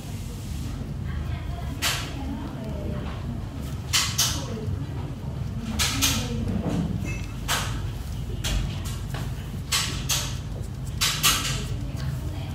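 Handling noise: a string of short, sharp clicks and rustles, about a dozen scattered through, over a steady low hum.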